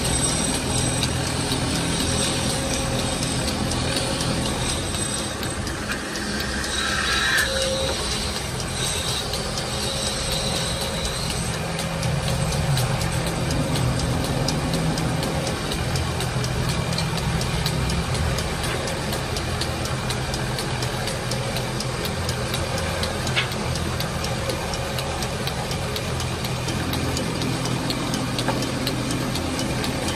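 Wood lathe running at steady speed, its drive giving a constant low hum, while coloured lacquer sticks are pressed against the spinning wooden leg.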